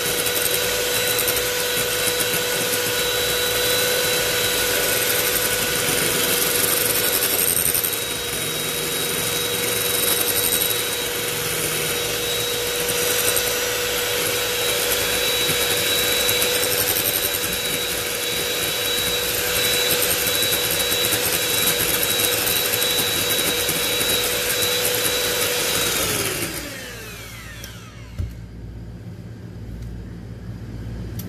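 Electric hand mixer running steadily with a whine, its beaters whipping cream in a glass bowl. It is switched off about 26 seconds in and its whine falls as the motor winds down. A single short knock follows near the end.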